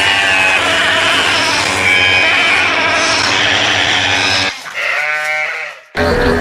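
Bleating mixed into a dense electronic hip-hop track. The track cuts out suddenly about four and a half seconds in, leaving one last wavering bleat, then a moment of silence.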